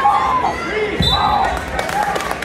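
A single heavy thump on the wrestling mat about a second in, over shouting voices.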